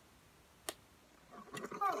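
A single sharp click, less than a second in, from a small screwdriver working a tiny screw in a wireless mouse's plastic housing.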